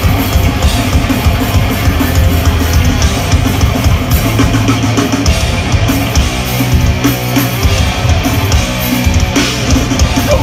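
Live heavy band playing an instrumental stretch with no vocals: distorted electric guitars, bass and a hard-hit drum kit, loud and dense throughout.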